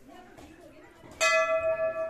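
A temple bell struck once about a second in, its clear pitched tone ringing on with a wavering level as it slowly fades.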